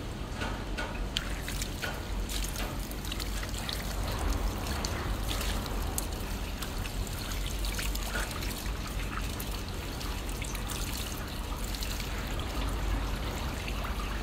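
Water running from a garden hose and splashing as it is used to rinse the face and body, a steady trickle broken by short splashes.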